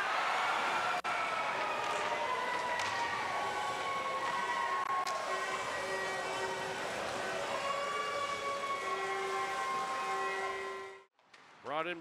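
Hockey arena ambience: steady crowd noise with siren-like gliding and held tones over it. It cuts out suddenly about a second before the end.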